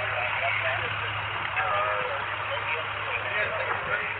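Indistinct voices talking throughout, too unclear to make out words, over a steady low hum.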